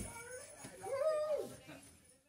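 Just as the band's music cuts off, a single drawn-out vocal call rises and falls about a second in, then fades away.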